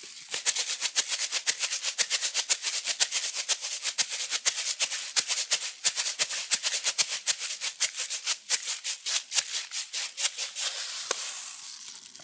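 A clear plastic bottle filled with brown rice shaken as a homemade maraca. The rice rattles in a quick, even rhythm and stops about a second before the end.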